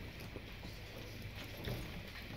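Faint footsteps of a person walking: a few light, irregular knocks of shoes on the floor, over a low steady room hum.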